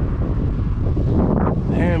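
Wind buffeting the microphone: a loud, uneven, gusting rumble. A man's voice breaks in near the end.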